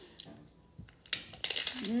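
Crisp fried corn tostada shell cracking and crunching as it is bitten into, a quick run of crunches starting about a second in.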